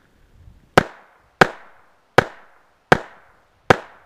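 Snub-nosed revolver fired five times in a quick string, shots about three-quarters of a second apart, each with a short echoing tail.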